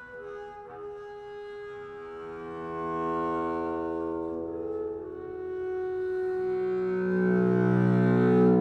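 Double bass played with the bow: a natural harmonic, with very light left-hand weight, breaks into a multiphonic with a wide spread of overtones, then settles onto the low, full open string from about six seconds in. The sound grows steadily louder.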